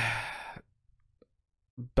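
A man's drawn-out 'uh' trailing off into a breathy sigh, then a pause of about a second, and a short breath just before he speaks again.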